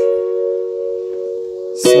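Roland EXR-3s arranger keyboard holding a chord of several notes, slowly fading, with the next chord struck near the end.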